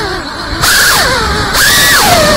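FPV quadcopter's brushless motors whining under throttle, their pitch falling, jumping up again about half a second in, then rising to a high held whine near the end, over rushing propeller wash. The quad flies on what its pilot calls a bad PID tune.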